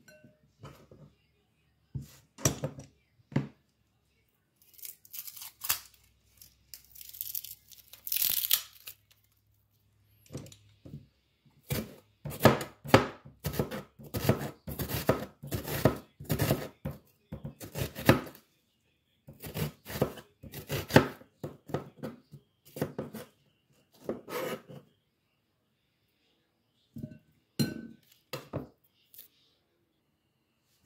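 Kitchen knife cutting a red onion on a plastic cutting board, a long run of quick cutting strokes through the middle of the stretch. Before the cutting there is a few seconds of crinkly rustling, with scattered knocks of vegetables and bowl on the counter.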